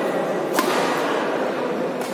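Badminton racket striking a shuttlecock: one sharp crack about half a second in and a fainter hit about a second in, over the steady background noise of a large hall.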